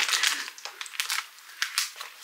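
Rustling and crinkling of packaging as small wig-kit products are handled, with a few light sharp knocks.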